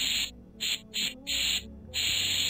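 Spray-paint hiss sound effect from a website animation: short bursts of hiss that start and stop several times, with faint background music beneath.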